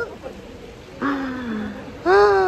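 A person's long drawn-out vocal sound, starting about a second in and held for about a second with its pitch slowly sinking, over low outdoor background noise.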